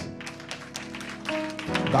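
Live church praise music: sustained chords held over a quick, steady percussive beat.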